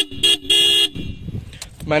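Aftermarket dual electric horns on a Yamaha R15 V3 motorcycle sounding in short beeps: two quick toots in the first second, the second a little longer, at the tail of a run of beeps.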